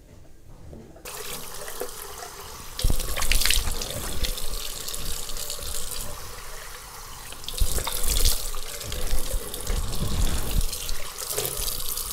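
Bathroom tap running into a sink, coming on about a second in, with louder uneven splashing at times as water is scooped and splashed onto the face to rinse it.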